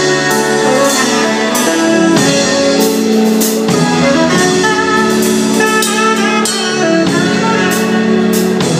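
Live soul/MPB band playing an instrumental passage without vocals: saxophone and keyboard over a drum kit, with repeated cymbal hits.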